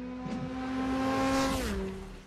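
Car engine sound effect: a steady engine note under a rush of noise that swells and fades, the pitch dropping suddenly near the end.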